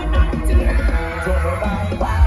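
Loud dance music played through a sound truck's loudspeakers, with a heavy pulsing bass and plucked-string melody.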